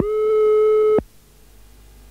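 Answering-machine beep: one steady electronic tone about a second long that cuts off sharply, followed by a faint steady hum.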